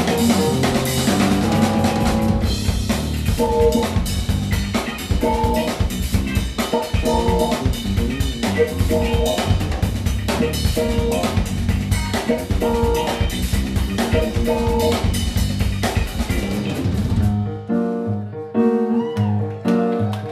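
A live instrumental band playing: drum kit, electric bass and electric guitar, with a riff that repeats about every two seconds. About three-quarters of the way through, the drums drop out and the bass and guitar carry on alone.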